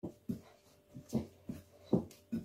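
Hands kneading soft bread dough in a bowl: a series of short, soft squishes and thuds at an uneven pace.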